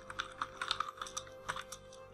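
Typing on a computer keyboard: a quick, uneven run of key clicks as a line of code is entered.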